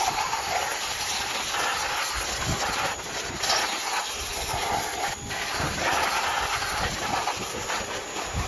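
Pressure washer jet spraying water onto a Subaru EJ25 cylinder head to rinse off degreaser and carbon: a steady, loud hiss of spray that wavers slightly as the jet plays over the head.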